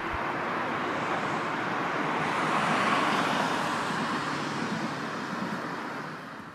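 A vehicle passing by: a broad rushing noise that swells to a peak about halfway through and then fades away.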